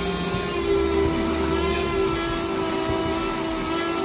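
Car-wash cleaning machinery running with a steady drone, several held tones over a hiss. A deeper rumble comes in about half a second in and fades after about two seconds.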